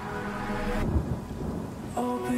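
Quiet chill electronic music: held synth pad chords over a low, noisy rumble, with the high end filtered away about a second in.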